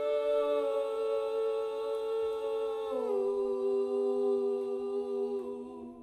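A live rock band's final chords held and left ringing, with no drums. It steps down to a lower chord about three seconds in, shifts once more, then fades out near the end.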